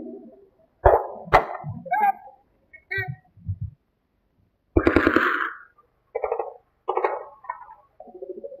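Short bursts of men's voices, shouts, grunts and coughs, separated by stretches of silence, with two sharp cracks about a second in.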